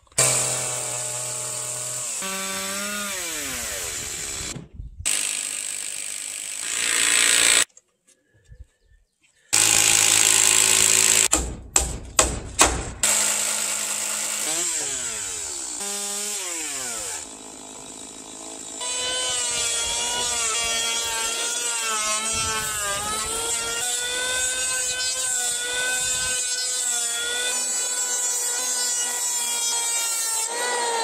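Woodworking power tools cutting timber in short runs that stop abruptly. Twice a motor winds down with a falling whine. In the second half a motor runs steadily under load, its pitch wavering as it cuts.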